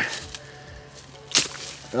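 A golf club swung hard through undergrowth: one sharp swish and strike about a second and a half in, as the ball is hacked out of the scrub.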